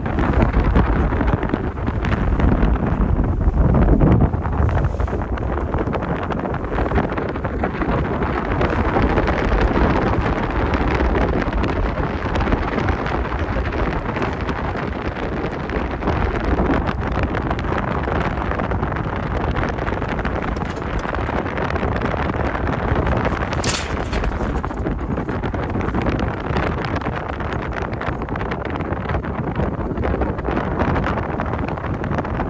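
Strong wind buffeting the microphone: a continuous loud rush and rumble, heaviest in the low end, with one brief high hiss about three quarters of the way through.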